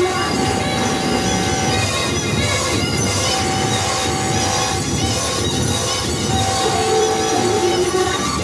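Live experimental noise music from electronics and synthesizer: a dense, steady wall of noise with a held mid-pitched tone that comes in three times, each lasting about a second and a half.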